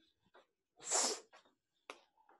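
A single short, hissy burst of breath from a person, about a second in, lasting about half a second, with a faint click near the end.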